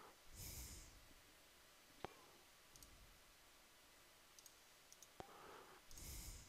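Near silence, broken by two faint mouse clicks, one about two seconds in and one near the end, and a soft breath near the start.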